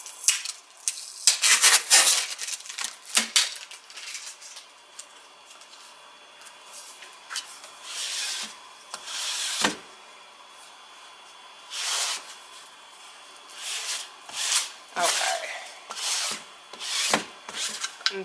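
A sticky lint roller rolled firmly over a fabric wine bag, in a series of separate strokes with short pauses between them. It is lifting lint off the blank before a heat-press transfer.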